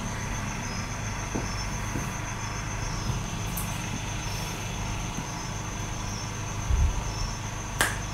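Printed fabric and scissors being handled on a table: a few faint knocks and rustles, a low thump near the end and a sharp click just before it ends, over a steady low hum.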